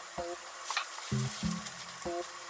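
A steady sizzling hiss under soft background music of short plucked notes, with a light tap about three-quarters of a second in.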